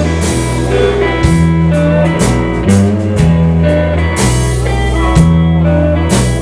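Live rock band playing an instrumental passage with no vocals: electric guitars and pedal steel guitar over bass and drums, the low notes changing about once a second under ringing cymbals.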